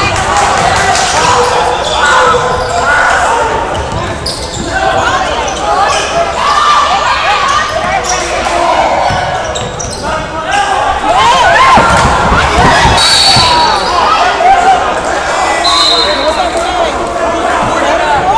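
Spectators talking and shouting in a gymnasium while a basketball bounces on the hardwood court, all echoing in the large hall.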